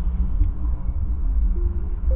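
Steady low rumble of city traffic, with a single short click about half a second in. Soft electronic music notes begin near the end.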